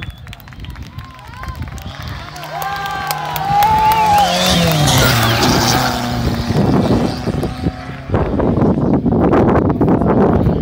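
A rally car's engine coming closer, revving hard, then dropping sharply in pitch about five seconds in as the car goes past. Wind buffeting the microphone takes over for the last two seconds.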